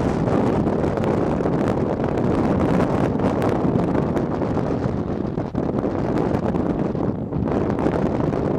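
Wind buffeting a camcorder microphone: a steady, rough rush with two brief lulls in the second half.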